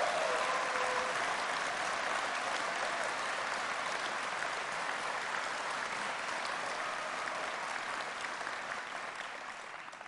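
Large audience applauding in a big hall. The clapping is loudest at first and slowly dies away toward the end.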